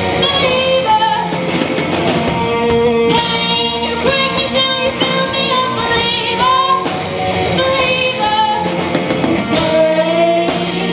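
Live amplified rock band playing: a woman singing lead vocals over electric guitar, bass guitar and a drum kit keeping a steady beat.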